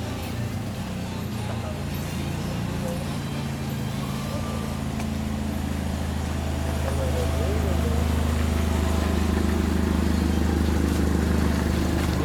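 A motor vehicle's engine running steadily at idle, a low even drone that grows louder about seven seconds in.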